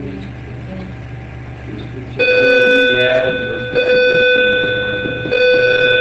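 A steady buzzy electronic tone pitched near 500 Hz starts about two seconds in. It sounds in stretches of about a second and a half, with brief breaks between them. Before it there is only a low hum and faint murmuring.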